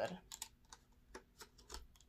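Light, irregular clicks and taps of clear plastic packaging being handled as a small item is pressed back into it, about eight sharp clicks spread over two seconds.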